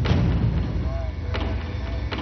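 A loud, deep rumbling sound effect from a TV drama soundtrack, kicked in sharply just before and carrying on steadily, with a faint short pitched note about a second in.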